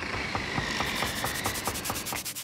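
Logo-reveal sound effect: a steady scraping hiss with rapid, evenly spaced ticks, about eight a second, over a faint high ring.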